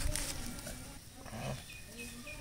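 A distant animal call, with a couple of short, high chirps near the end.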